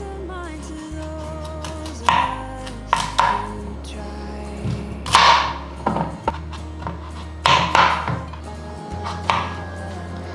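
A kitchen knife cutting through a raw pumpkin, with several separate cuts each ending in a knock on the cutting board, over steady background music.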